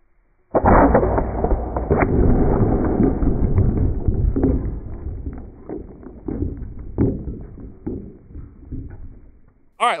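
Slowed-down sound of an air-rifle pellet striking and shattering a clay pot. A deep boom starts about half a second in and is drawn out into a long low rumble, with scattered crackles of breaking pieces, that fades away over about nine seconds.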